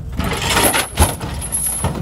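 Dodge Ram pickup's rear end dropped from an excavator's chain onto the ground: one heavy thud about a second in, amid a rushing clatter.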